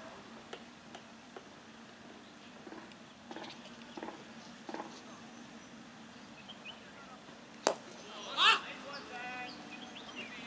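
Cricket bat striking a hard leather ball with a single sharp crack, followed under a second later by a loud shout from a player, then brief calls.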